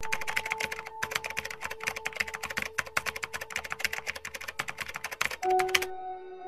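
Rapid keystroke clicks of a typing sound effect, with a brief pause about a second in, over a steady held musical tone. Near the end the clicking stops and the tone shifts to a lower pitch.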